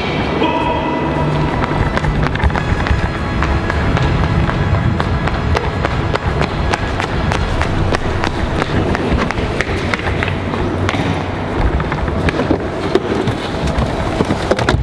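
Music playing over hurried running footsteps, with the knocks and rustling of a handheld camera being carried on the run.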